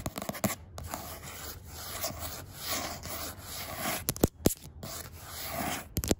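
Long acrylic fingernails scratching quickly back and forth over a textured printed sign, the scratching swelling and fading with each stroke. A few sharp nail taps come in the last two seconds.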